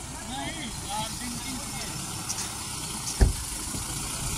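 A motor vehicle engine idling steadily under faint, indistinct voices of people talking, with a single sharp thump a little after three seconds in.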